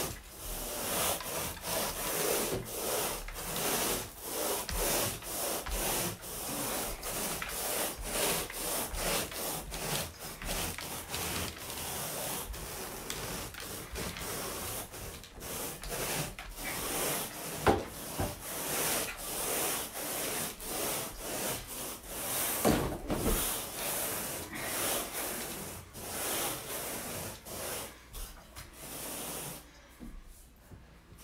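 Long-handled carpet grooming rake dragged back and forth through the carpet pile: repeated scraping, rubbing strokes, about one to two a second.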